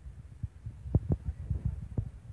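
Irregular low thumps and rumble on the microphone, with two sharper knocks about a second in and another at the end.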